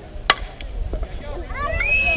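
Softball bat striking a pitched fastpitch softball: one sharp crack about a third of a second in. About a second later, people start shouting and cheering as the batter runs.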